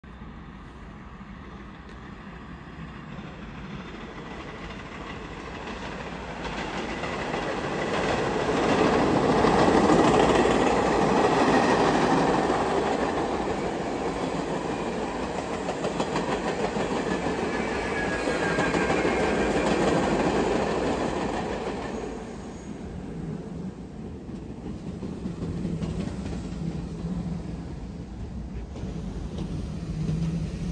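New York City subway train on the Brighton Line running on the tracks, growing louder over the first third, staying loud until about two-thirds in, then dropping back.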